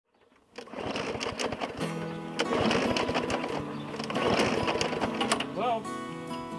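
Small gasoline lawn mower engine running, a rapid clatter, with music over it; the sound starts about half a second in.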